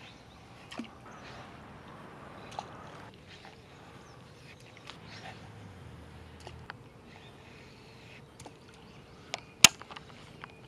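Fishing rod and reel being handled and cast: scattered light clicks and rustles over faint outdoor ambience, then a sharp click near the end, the loudest sound.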